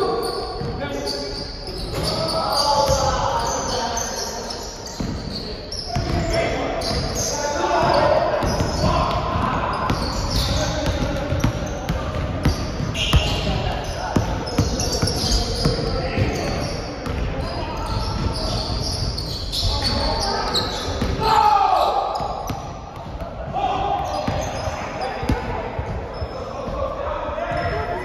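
Basketballs bouncing on a hardwood gym floor during a pickup game: repeated dribble thuds throughout, mixed with players' voices and calls in the large hall.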